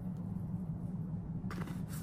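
Steady low hum with a brief, faint rattle about one and a half seconds in as dried Italian seasoning is shaken from a spice jar into a bowl of flour.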